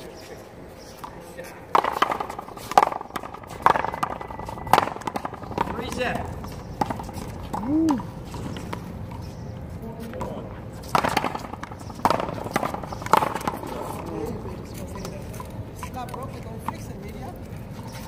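Paddleball rally: sharp knocks of paddles striking the ball and the ball hitting the wall, about one a second. There is a run of four knocks a couple of seconds in and three more a little past the middle.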